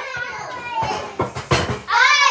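Young children's voices, chattering and calling out excitedly, with a few sharp knocks in the second half.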